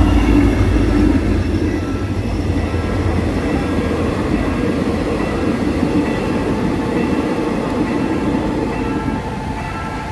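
Train passing close by: a heavy low rumble from the hauling locomotive for about the first second, then the towed, unpowered new electric multiple-unit cars rolling steadily past on their wheels, slowly fading near the end.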